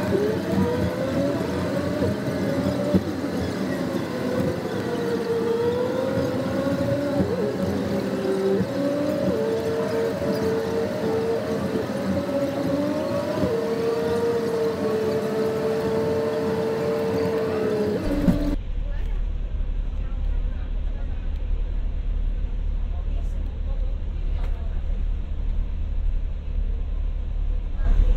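Double-decker bus engine and road noise in a road tunnel, played back sped up, with pitched tones that slowly rise and fall. About two-thirds of the way in it cuts abruptly to a low, muffled rumble.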